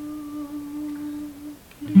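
A man's voice holding one long vocal note, steady in pitch, with no guitar under it; it stops after about a second and a half. A loud acoustic guitar strum comes in right at the end.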